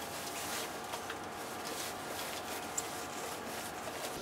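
Ankara cotton fabric rustling softly as it is handled and spread out by hand, over a faint steady hum.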